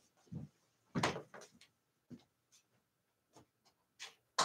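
A few scattered household knocks and bumps off-camera, the loudest about a second in, with fainter ones after.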